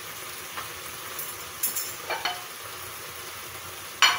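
Pork and scallions sizzling steadily in a frying pan over a gas flame, with a few short clicks, the sharpest about one and a half to two seconds in.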